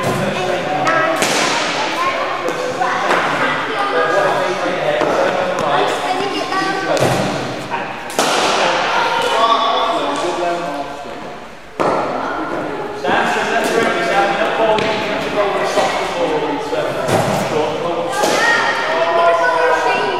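Background chatter of children's voices in an indoor cricket hall, broken by about half a dozen sharp thuds of hard cricket balls striking.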